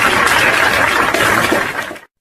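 Audience applauding, a dense clatter of many hands clapping, cut off suddenly near the end.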